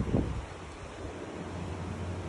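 Low rumbling wind and handling noise on a phone microphone as the phone is moved, strongest in the first half-second, then settling into a steady low hum with a faint hiss.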